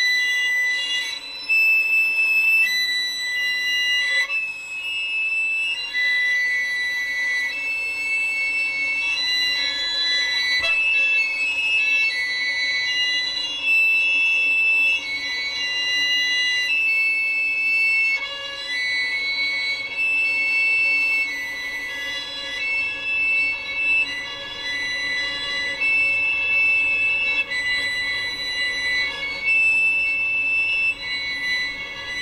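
Solo violin playing a slow succession of long, held bowed notes, one after another.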